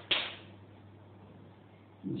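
A single sharp stroke of chalk on a blackboard just after the start, fading within half a second, followed by a low steady hum.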